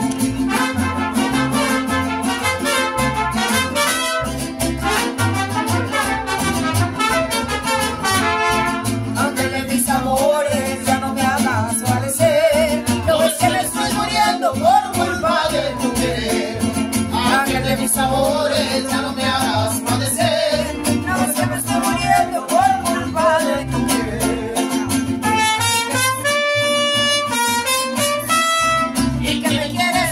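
Mariachi band playing: trumpets and guitars with a steady strummed bass rhythm, a voice singing through the middle, and a trumpet passage of held notes near the end.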